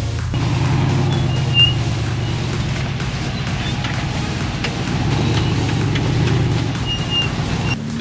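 A rock-crawler buggy's engine running steadily as the buggy climbs a rock ledge, with music underneath.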